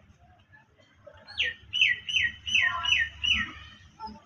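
A bird chirping: a run of about six quick, high chirps, each falling in pitch, starting a little over a second in and ending shortly before the close.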